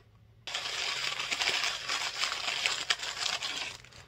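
Crinkly printed packaging wrap crumpling and rustling as it is handled, a dense crackle that starts about half a second in and stops just before the end.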